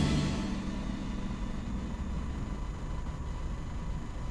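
The last of a news-bulletin intro sting dies away in the first half-second, leaving a steady low background hum with a faint thin tone.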